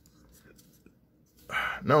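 Low room tone with a few faint clicks from a plastic model kit being handled, then a man's voice starts near the end.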